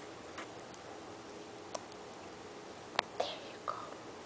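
Quiet room with three light taps, the loudest about three seconds in, followed by a brief soft, whispery voice sound.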